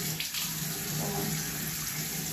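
Bathroom sink faucet running steadily, water pouring into the basin.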